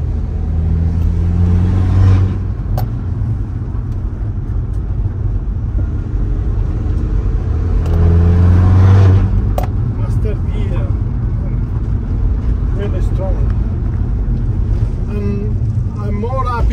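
VW Caddy's turbocharged 1.9 TDI PD150 diesel engine pulling hard in third gear, heard inside the cabin over steady road noise. It gets louder twice, near the start and again about eight seconds in.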